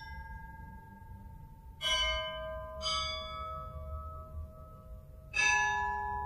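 Church bells struck one at a time, each at a different pitch and left ringing on. There are three strikes, at about two, three and five and a half seconds in, over the fading ring of one struck just before.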